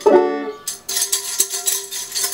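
A banjo chord strummed once, ringing on, then a tambourine gripped in the strumming hand jingling from under a second in, over the banjo's still-sounding string.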